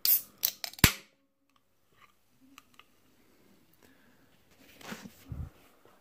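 An aluminium soda can opened by its pull tab: a few quick clicks, then a sharp crack as the tab pops, all within the first second. Faint handling sounds and a low bump follow near the end.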